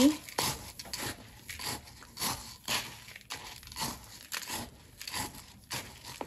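A plastic scoop digging and scraping through a bucket of gritty succulent potting mix of small white stones and dark soil. It makes a series of irregular crunching scrapes, about two a second.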